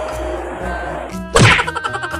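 Background music with a comic sound effect added in editing: a sudden whack with a sharply falling pitch about one and a half seconds in, followed by a quick run of ticks.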